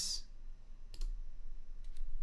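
Computer mouse clicks as a patch cord is connected on screen: one sharp click about a second in and a fainter one near the end, over a low steady hum.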